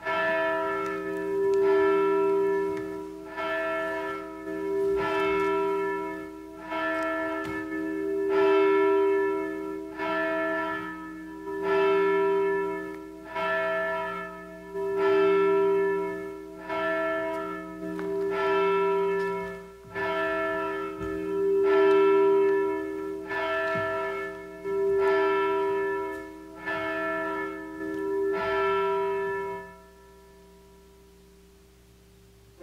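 A single church bell ringing the call to worship, struck about every second and a half, the strokes alternately louder and softer with the tone humming on between them. The ringing stops at the very end.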